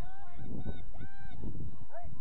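A bird giving short honking calls, about two a second, over steady wind rumble on the microphone.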